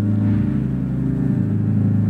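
Church organ playing sustained low chords, with deep bass notes; the chord changes about a second and a half in.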